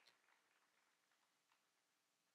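Near silence: faint room tone with a few very faint ticks.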